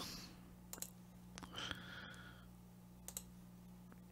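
A few faint computer mouse clicks, spaced irregularly, over a low steady hum.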